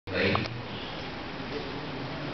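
A brief, cut-off fragment of a man's voice, then the steady background noise of a large hall with a seated audience during a pause in a speech.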